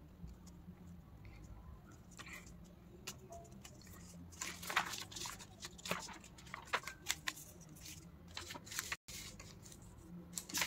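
Craft paper being handled: faint rustles and scuffs as sheets of folded paper are pressed, slid and shifted on a desk pad, coming in a run of short strokes from about four seconds in.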